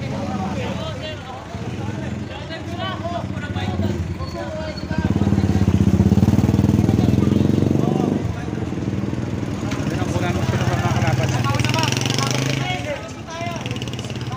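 Street scene with people's voices and a motor vehicle engine running close by, loudest for about three seconds midway and then cutting off sharply, with a weaker engine hum again later.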